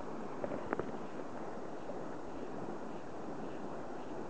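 Steady rushing noise of flowing river water, with two light clicks about half a second in.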